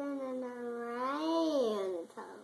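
A long drawn-out vocal call lasting about two seconds, held on one pitch, then rising and falling in pitch near the end.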